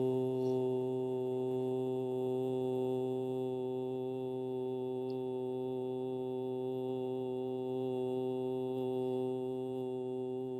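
A man's low, steady closed-mouth hum, the long 'mmm' of a chanted Om, held on one pitch and slowly fading.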